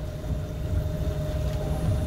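Electric-converted cabin cruiser running underway: a steady low rumble with a constant thin whine running through it.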